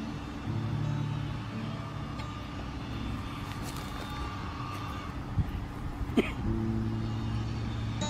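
Low, steady rumble of a passing motor vehicle under soft music, with two short clicks about five and six seconds in.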